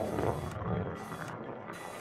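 Mechanical ratcheting and clicking sound effects, a dense rattle with bright bursts about every two-thirds of a second.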